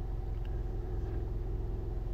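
A steady low background hum.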